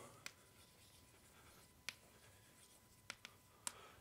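Chalk writing on a blackboard, faint: light scratching with several sharp taps as the chalk strikes the board.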